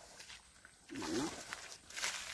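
A single short animal cry about a second in, a pitched call that falls away, over faint rustling.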